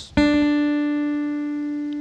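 Acoustic guitar's second string, fretted at the third fret (D), plucked once downward with the thumb about a moment in; the single note rings on and slowly fades.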